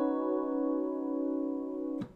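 A sustained B add-nine chord (B, C♯, D♯, F♯) held on a keyboard with a piano sound. It is the anchor chord that the progression returns to, here without the major seventh. The chord rings and slowly fades, then is released and stops right at the end.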